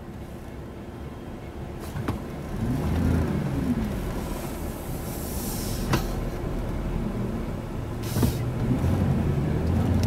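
Car engine and road noise heard from inside the cabin as the car moves off into a roundabout. The engine note rises and falls about three seconds in and climbs again near the end, with a few sharp clicks along the way.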